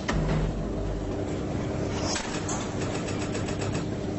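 A steady mechanical hum, with a fast run of even clicks a little past halfway.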